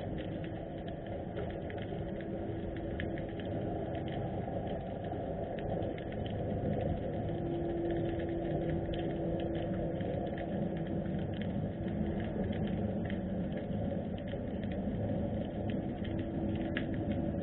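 Underwater sound of harbour seawater: a steady low rumble with a constant scatter of faint clicks and crackles above it, and a faint steady hum underneath.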